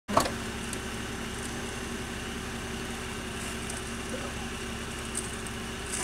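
A car engine idling steadily, with a short knock right at the start.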